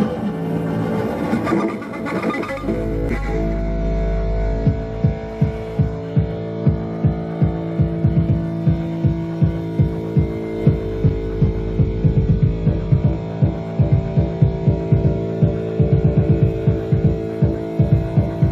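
Live music from two electric bass guitars and electronics. A dense, noisy passage gives way about two and a half seconds in to a deep sustained drone under held synth tones. A steady throbbing pulse comes in around four and a half seconds in.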